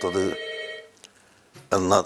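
A man speaking briefly. As his words end, a steady ringing of several tones at once holds and fades out within about a second. More speech follows near the end.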